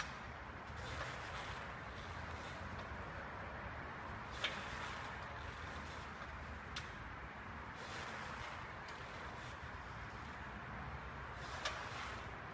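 Glute-ham raise bench under slow body-weight reps: a steady low noise with a few sharp clicks from the bench, the loudest a little over four seconds in.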